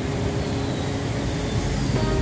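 Steady road traffic noise, an even low rumble of passing vehicles.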